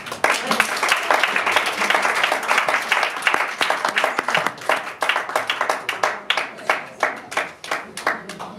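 Audience applauding: dense clapping that thins out into scattered single claps over the last couple of seconds.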